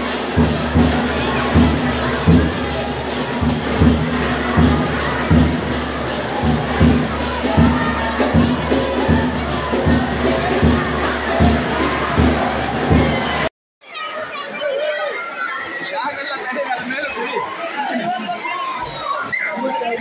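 Temple percussion band beating a steady rhythm, about two beats a second, over a dense ringing wash of sound. It cuts off abruptly about two-thirds of the way through, and a crowd shouting and cheering follows.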